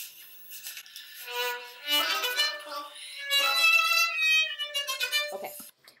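Violin playing a melody of held notes, starting about a second in and stopping shortly before the end. It is a recorded performance being played back in the editor.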